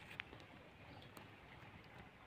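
Near silence: faint outdoor background hiss with two faint clicks.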